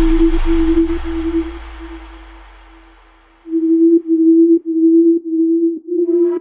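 Breakdown in a G-house electronic track: a single steady synth tone over a deep bass, both fading almost to silence about three seconds in, then the tone returning in a chopped rhythm.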